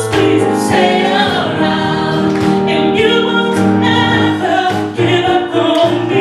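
Live gospel vocal group, women's and a man's voices, singing in harmony into microphones over a band with held bass notes and drums.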